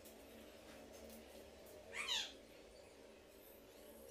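A bird's brief call about halfway through: a quick run of falling chirps, over quiet room tone.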